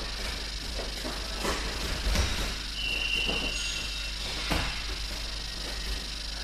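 Grappling on wrestling mats: a few sharp thuds and knocks of feet and bodies on the mat over a steady low hall hum, with a brief high steady tone lasting about a second near the middle.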